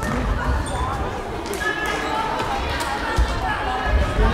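Thuds of a football being kicked and bouncing on a sports-hall floor during an indoor match, with voices calling out, echoing in the large hall. The loudest thuds come about three seconds in and at the very end.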